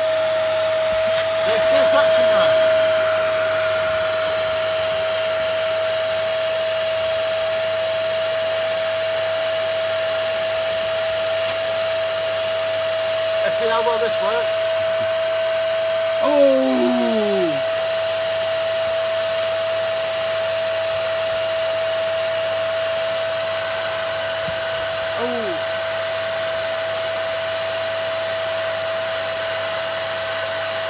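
Hoover Dust Manager Pets 2300 W canister vacuum cleaner running steadily with a constant high motor whine while it sucks up bag dust and fluff. A few short sliding sounds come in about halfway through and again near the end.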